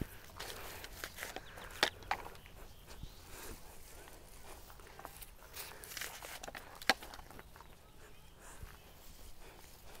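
Faint rustling of plants being handled in a large planter, with soft footsteps and scattered light clicks. Two sharper clicks come about two seconds and seven seconds in.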